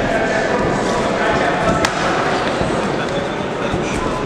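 Overlapping shouting voices of coaches and spectators ringside at a kickboxing bout, with one sharp smack about two seconds in.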